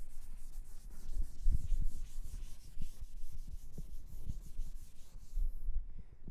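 Blackboard eraser wiping a chalkboard in quick repeated strokes, with dull knocks against the board, stopping suddenly about five and a half seconds in.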